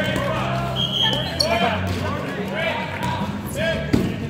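Rubber dodgeballs bouncing on a hardwood gym floor amid players' indistinct shouting, with a sharp ball impact near the end.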